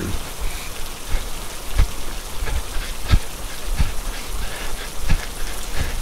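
Steady rain falling, a rain sound effect, with a few dull low thumps at irregular intervals, the loudest about three seconds in.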